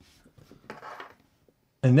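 Faint rubbing and rustling lasting about a second as small earbuds are pushed into the ears by hand.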